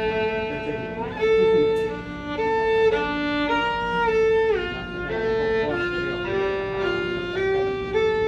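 Solo violin bowing a short melody of about a dozen held notes in fairly even lengths, stepping up and down in pitch. It is played strictly as written, with no expressive shaping: robotic, not human.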